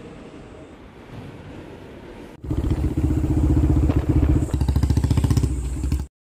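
Quiet room tone, then after a cut about two and a half seconds in, a loud engine running close by with a rapid, even pulsing beat.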